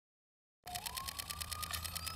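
Sound-design sting for a show's title card: after silence, a fast, even mechanical rattle starts suddenly about half a second in, with a low hum under it and a tone that glides up and then holds, building.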